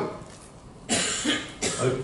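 A cough about a second into a pause, followed by a second short, breathy burst.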